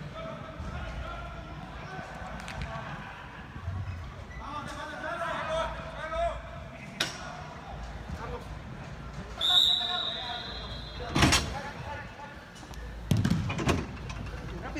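Soccer ball being kicked and slamming against the boards of an indoor turf arena, with sharp knocks echoing in the large hall, the loudest about seven and eleven seconds in. Players shout across the hall, and a short, high referee's whistle blast sounds about two-thirds of the way through.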